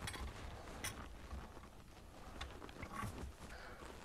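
Quiet handling under a bathroom sink: a few faint small clicks and knocks of hands working a faucet's mounting nut and parts, over a low room rumble.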